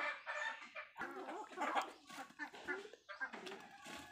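Domestic chickens clucking: a series of short calls from a small flock as they feed.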